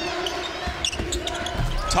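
Basketball game sounds on a hardwood court: short high sneaker squeaks near the start, then a few sharp thuds of the ball bouncing as players jostle under the basket.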